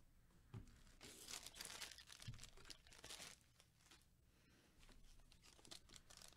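Faint crinkling and tearing of a foil Panini Prizm football card pack wrapper handled by gloved hands, in short rustling spells with a brief lull in the middle.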